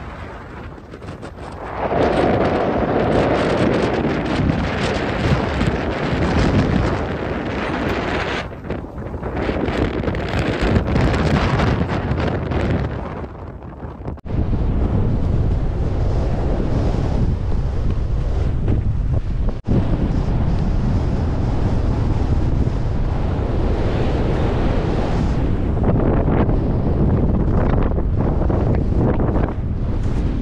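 Strong mountain wind buffeting the microphone: a loud, rough rumble that surges in gusts, easing for a moment about halfway and again near two-thirds of the way through.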